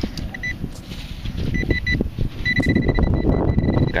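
Handheld pinpointer (Garrett Pro-Pointer) beeping in a steady high tone: a couple of short beeps, then three more, then one continuous tone for the last second and a half as it closes on the target in the soil. Crunching and rustling of clods being broken up by hand underneath.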